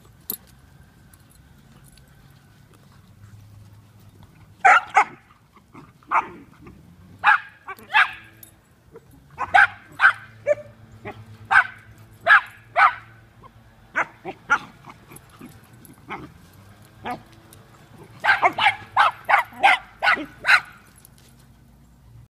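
Several dogs play-fighting and barking: short, sharp barks, singly and in pairs, starting about five seconds in, with a quick run of barks near the end.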